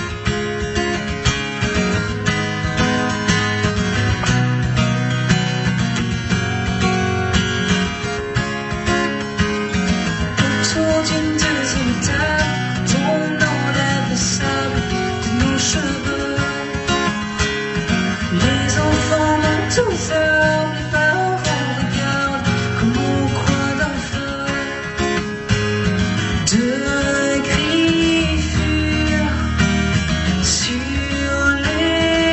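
Live acoustic guitar strummed with keyboard accompaniment, holding long low notes. A woman's singing voice comes in over it from about a third of the way through.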